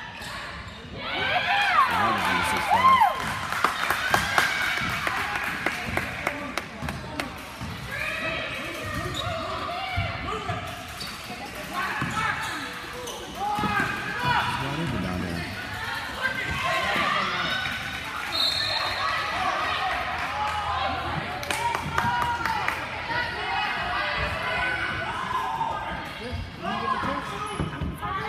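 Basketball game sounds in a gym: the ball bouncing on the hardwood court, sneakers squeaking, and spectators talking and shouting, loudest about two to four seconds in.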